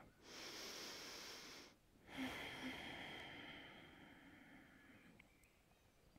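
A woman's slow, deep breathing, faint: one long breath of about a second and a half, then a longer breath of about three seconds that fades away.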